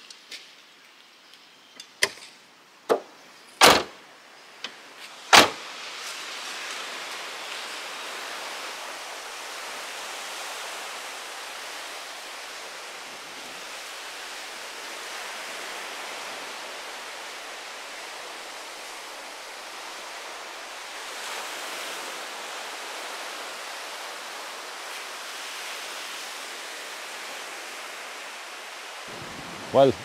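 A few sharp clunks and knocks in the first six seconds, the loudest about four and five seconds in, then the steady hiss of small waves breaking on the shore.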